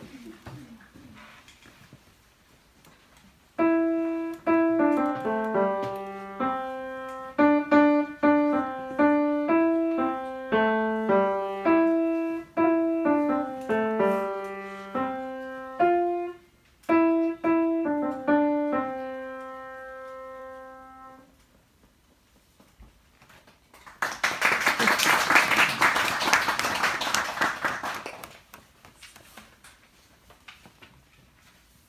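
A grand piano played by a child: a short, simple melody in single notes with one brief pause, ending on a held note that rings out. A few seconds later comes a burst of audience applause lasting about four seconds.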